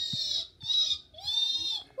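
A child's high-pitched screams: a long shriek that ends about half a second in, a short one, then a third that rises and falls in pitch.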